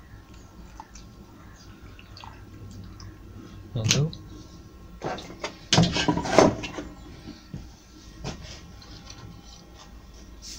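Paint tins and a plastic mixing cup handled and set down on a workbench: a knock about four seconds in, then a louder run of clattering knocks a couple of seconds later and a small click after that.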